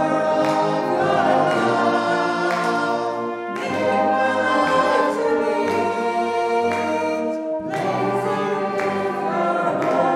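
Congregation singing a hymn, accompanied by a brass band of cornets, tenor horns and tubas, in sustained phrases with short breaks about every four seconds.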